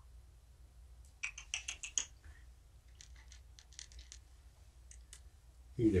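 A cat crunching dry food: a quick run of crisp clicks about a second in, then scattered single crunches.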